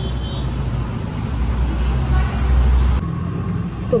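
A loud, low, steady rumble of background noise that cuts off abruptly about three seconds in.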